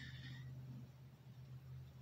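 Near silence: the quiet of a car cabin with a faint steady low hum and a small click at the start.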